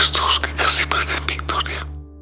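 Whispered speech over a low, steady background music drone; the whisper stops near the end.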